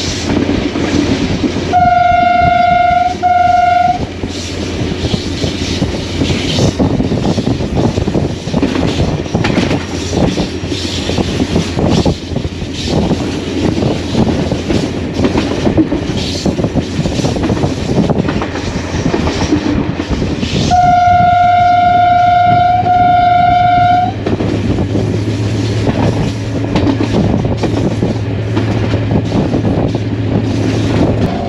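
HGMU-30R diesel locomotive's horn sounding twice, each time a long single-note blast followed by a short one, over the steady running noise of the locomotive and its wheels on the track.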